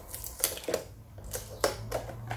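Cardboard box with a boxed ceramic mug being opened by hand: about half a dozen sharp, irregular clicks and crackles as the packaging is pried and pulled apart.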